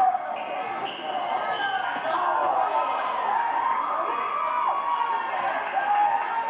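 A basketball being dribbled on a gym floor, under the steady chatter of spectators' voices.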